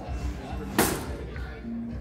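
A single sharp slam about a second in, over a bed of crowd chatter and background music in a large hall.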